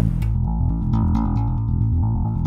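A G&L L-2000 electric bass played through its active preamp: a quick run of low notes, with little top end.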